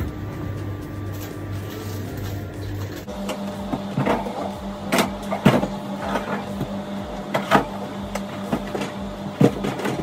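Steady hum of commercial kitchen refrigeration, shifting to a higher tone about three seconds in, with sharp knocks and clinks of food containers being handled inside a reach-in fridge.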